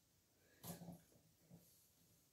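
Near silence: room tone, with one brief faint soft sound a little under a second in.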